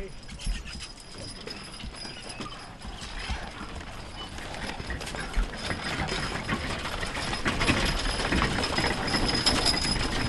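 Hooves of a team of two draft horses clip-clopping at a walk, pulling a wooden wagon across a grass field, getting louder over the second half as the team comes close.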